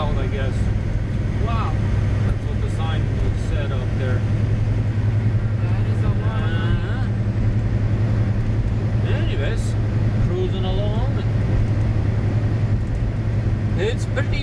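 Semi truck's diesel engine droning steadily at highway cruising speed, heard from inside the cab over road noise. Faint voices come and go over the drone.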